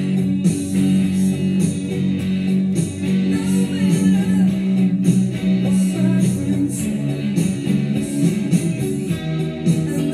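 Fender Stratocaster electric guitar played through an instrumental passage, with a steady beat behind it.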